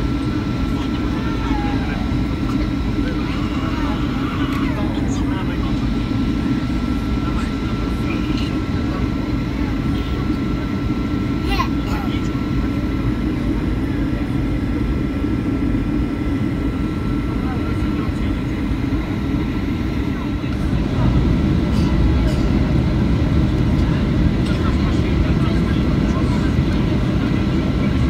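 Steady low rumble of engine and air noise inside an aircraft cabin in flight, growing louder about twenty seconds in.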